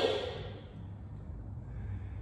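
A woman's spoken instruction trails off at the start. Then comes a pause filled only by a steady low hum of room tone.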